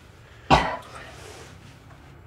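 A man lets out one sharp, choked sob about half a second in.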